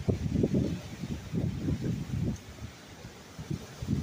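Gusty wind buffeting the microphone, strongest for the first couple of seconds, easing, then gusting again near the end. This is the wind of an approaching thunderstorm.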